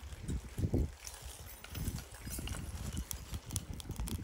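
Small pieces of scrap copper spilling out of a small burning tin and clattering onto a concrete slab: irregular knocks and light clicks over a low, uneven rumble.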